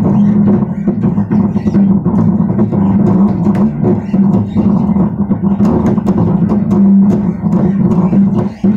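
Bass guitar playing a continuous line of plucked notes, with many sharp percussive clicks among them.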